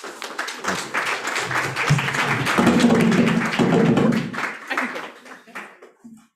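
Audience applauding, a dense patter of many hands clapping with voices talking and laughing over it. The clapping thins out and stops about five seconds in.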